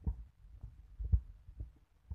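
Irregular low thumps and rumble on a handheld phone's microphone, with one louder thump a little past the middle.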